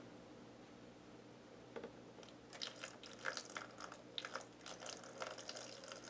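Water poured slowly from a plastic container into a small, empty acrylic aquarium, faintly trickling and splashing onto the gravel and rocks. It starts about two seconds in as a scatter of small irregular ticks and splashes.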